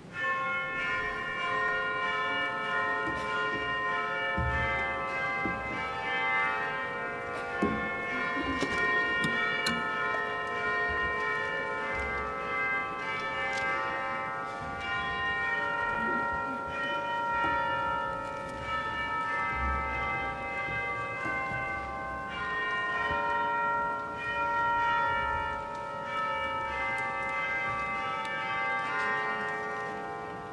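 Church bells ringing: many overlapping ringing tones that start suddenly and continue, the pitches changing every second or so.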